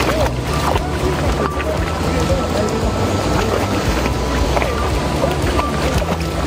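Shallow river water rushing steadily over rocks, with splashing as a dog wades through it, under background music.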